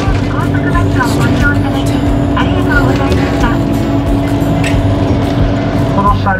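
Steady engine and road drone heard inside a moving bus, a low rumble with a constant hum. Indistinct voices come and go over it.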